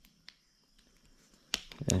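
Mostly quiet, with one faint click about a third of a second in, then a cluster of sharp clicks near the end as a man's voice starts.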